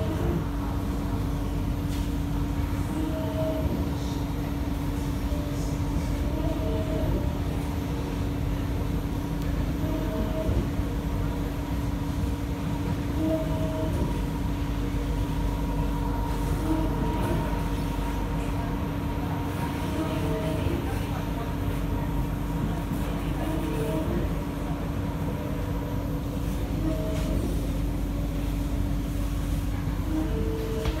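Running noise heard inside the carriage of an SMRT C151B electric train on the move: a steady low rumble with a constant hum, and short higher tones recurring every few seconds.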